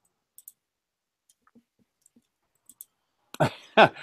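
Near silence broken by a few faint, short clicks, a pair about half a second in and another pair near the end. A man's voice then starts talking in the last half second.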